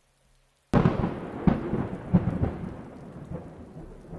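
A thunderclap cracks suddenly about three-quarters of a second in, then rolls and rumbles with further cracks, fading slowly under a steady patter of rain.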